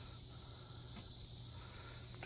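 Steady high-pitched insect chorus, with a faint click about halfway through.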